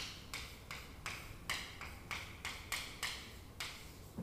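Chalk writing on a chalkboard: a quick run of short taps and scratches, about two to three strokes a second, as each letter and symbol of an equation is drawn.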